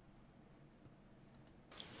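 Near silence with a few faint, short clicks about a second and a half in, typical of a computer mouse being clicked.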